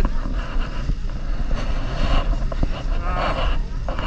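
A steady low background rumble with faint voices in the background.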